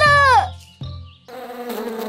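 A short cartoon-voice exclamation at the start, then the buzzing of a swarm of bees as an animation sound effect, steady from about a second and a half in.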